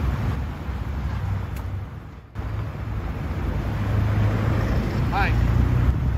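Low steady rumble of an idling vehicle engine outdoors, with wind noise on the microphone; the sound drops out briefly about two seconds in. A man says "hi" near the end.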